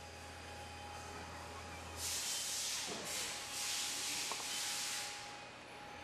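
Upper platens of a commercial clamshell grill coming down: a soft hissing that starts about two seconds in, swells and fades twice over about three seconds, while a low hum cuts out as it begins.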